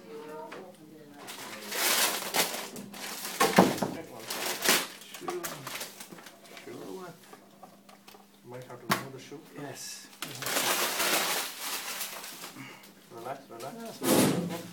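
Metal parts of an Ilizarov external fixator frame being handled and taken apart: scattered clicks and knocks, the sharpest about three and a half seconds in, with stretches of scraping, rustling noise around two seconds and again about eleven seconds in.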